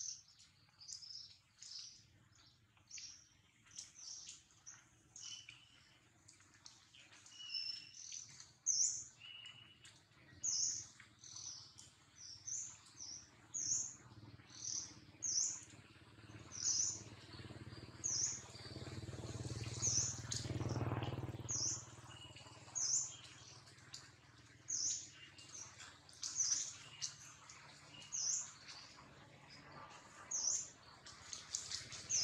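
A bird calling with short, high chirps, repeated about once a second, with some lower, shorter notes in between. A low rumble swells and fades around twenty seconds in.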